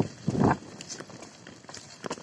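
Tyres rolling over a rutted dirt path: two heavy bumps in the first half second, then lighter crunching with scattered clicks of grit.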